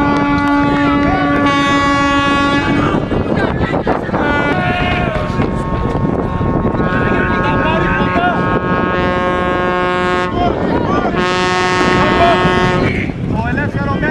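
Long, loud horn blasts, a few held notes of one to three seconds each with short breaks between, over steady crowd noise and wind on the microphone.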